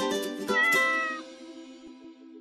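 Short music jingle of plucked notes with a cat meow about half a second in, then the last chord dying away.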